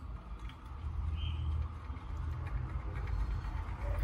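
Low rumble of a desktop PC restarting, with its fans running.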